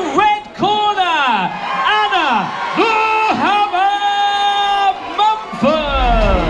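A ring announcer's voice over the hall's public-address system, calling out in long drawn-out words, with a held note of about a second in the middle, and a few crowd whoops. Loud rock music starts right at the end.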